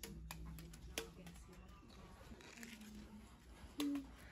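Faint, distant voices in a quiet room, with a few light taps or clicks.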